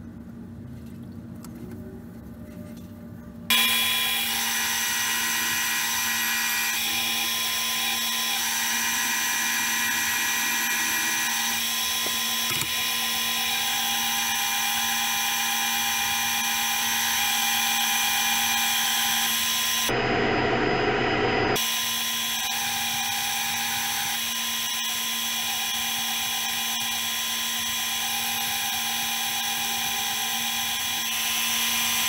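Bench-top band saw running with a steady whine while cutting a small block of wood. It comes in abruptly a few seconds in, after a quieter stretch, and its sound changes briefly about two-thirds of the way through.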